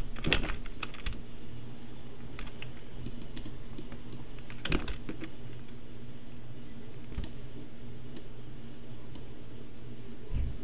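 Scattered clicks and taps from a computer keyboard and mouse, one louder click just under five seconds in, over a steady low background hum.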